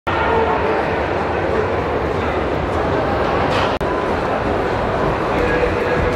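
Spectators shouting and cheering on the runners, a dense wash of many voices, with a brief cut in the sound a little before four seconds in.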